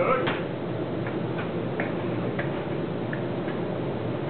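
A few light, irregularly spaced clicks over a steady low machinery hum in a workshop, after a brief louder sound at the very start.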